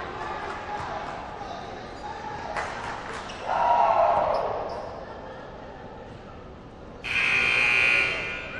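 Basketball court sound in a gym: a ball bouncing and voices. About seven seconds in, a loud arena horn sounds for about a second.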